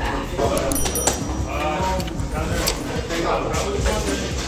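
A man's voice in three short, wordless or mumbled vocal phrases.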